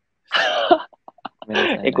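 A man's single short, breathy laugh, followed after a pause by speech.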